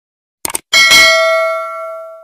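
A quick double click, then a bright bell ding that rings on and fades away over about a second and a half: the sound effect of a notification bell being clicked.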